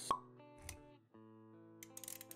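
Intro-animation sound effects over background music: one sharp pop about a tenth of a second in, a softer low thump just after half a second, then music with sustained notes.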